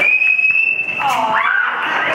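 Audience member's long, steady high whistle lasting about a second, followed by a short hooting 'woo' that swoops up and down, over crowd noise.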